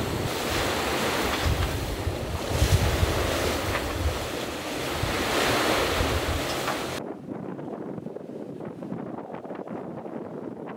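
Wind buffeting the microphone over the rush of sea water around a sailboat under way. About seven seconds in it drops suddenly to a much quieter wash of water and light wind with faint small ticks.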